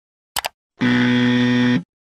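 Two quick click sound effects, then a low electronic buzzer tone held for about a second and cut off sharply.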